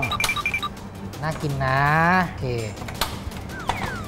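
Metal tongs clicking against a wire draining basket and pan as deep-fried battered pieces are lifted out of the oil, with a few short electronic beeps near the start.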